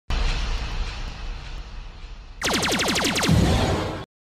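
Intro sound effect for a logo card: a noisy rumble over deep bass, then about two and a half seconds in a loud pitched tone that sweeps steeply downward, settling into low bass.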